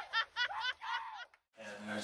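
A person laughing in a quick run of repeated "ha" syllables, about four or five a second, which cuts off about 1.3 s in. A faint steady hum follows.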